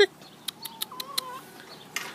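Backyard hens: a short cluck at the start, a few sharp clicks, then a thin, drawn-out hen call about half a second in that lasts under a second.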